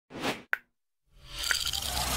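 Produced intro sound effects: a short swish, a sharp plop about half a second in, then a pause before a swell of noise rises with another plop.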